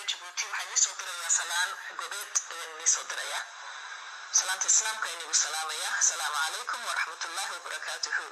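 Speech played through a smartphone's small loudspeaker, thin and tinny with no bass, talking without a break.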